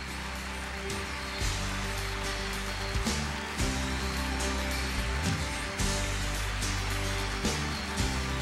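Instrumental music with a steady beat and a moving bass line.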